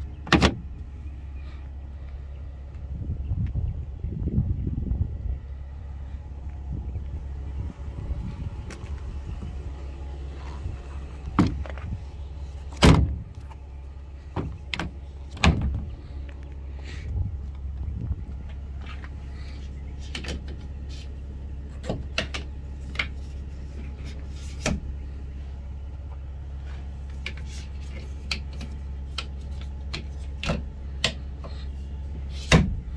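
Hand-worked pickup-bed fittings clicking, knocking and clunking: a folding plastic bed-extender frame, then the tonneau cover and its latch. The loudest knocks come near the start and about halfway through, over a steady low rumble.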